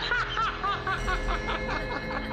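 A high-pitched laugh, a quick run of short 'ha' notes that dies away after about a second and a half, over background music with steady held tones.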